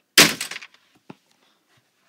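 A plastic toy RC car dropped into a plastic storage bin of toys, landing with one loud crash that rattles on for about half a second, followed by a faint click about a second later.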